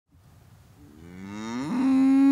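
A Scottish Highland cow mooing. The moo starts faint a little under a second in, rises in pitch and swells in loudness, then holds one steady pitch.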